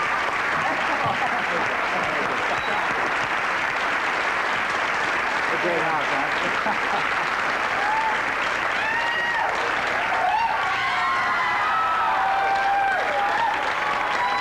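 Studio audience applauding steadily, with voices heard over the applause in the second half.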